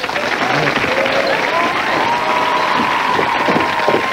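Studio audience applauding and cheering at the end of a sitcom scene, with one long held high note rising in and then staying steady over the clapping for the last two and a half seconds.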